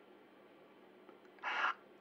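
Near silence with faint room tone, then a short breath intake from the voice actor about one and a half seconds in, just before the next line of speech.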